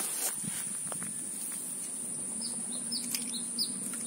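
Outdoor ambience by a weedy ditch: short, high, falling bird chirps repeat in small clusters, mostly in the second half, over a steady high-pitched whine, with a faint click or two.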